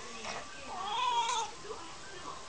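Domestic cat giving one meow about halfway through, rising then falling in pitch, while its tail is being grabbed and held.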